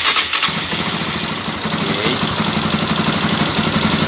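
Honda NX400i Falcon's single-cylinder engine starting up, catching about half a second in, then idling steadily.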